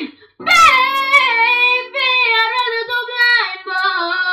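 A teenage girl singing a long, wordless run of held and bending notes that step downward, after a short breath near the start, over sustained chords on a Yamaha electronic keyboard.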